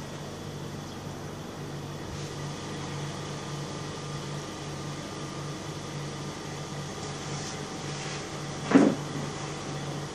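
A steady low hum with one short, loud knock near the end.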